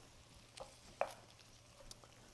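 Faint stirring of a thick, creamy mixture in a cast iron skillet with a wooden spatula, with a few soft taps of the spatula against the pan, the clearest about a second in.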